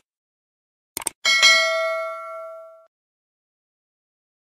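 Subscribe-button sound effect: two quick mouse clicks about a second in, then a single bell-like notification ding that rings out and fades over about a second and a half.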